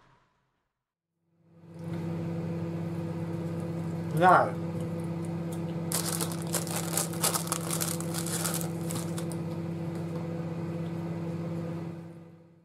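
A steady low hum, with a short rising sweep about four seconds in, then about three seconds of crinkling, like plastic packaging being handled.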